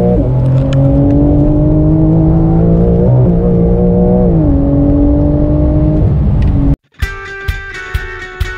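Porsche 911 flat-six engine heard from inside the cabin, accelerating with its pitch climbing steadily, a brief dip for a gear change about three seconds in, then dropping about four and a half seconds in and holding lower. The engine sound cuts off suddenly near the end and guitar music starts.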